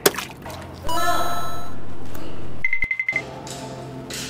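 Edited-in show sound effects: a loud sustained jingle with rising bright tones from about a second in, then a short, rapidly pulsing bell-like ring near three seconds, leading into quieter background music.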